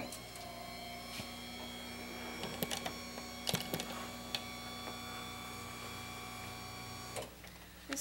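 Electric hospital bed motor running steadily as the bed is raised to an elevated position, with a few light clicks, cutting off about seven seconds in.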